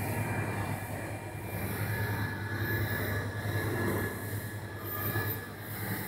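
Store ambience in a large supermarket: a steady low hum and rumble with a faint high whine in the middle seconds.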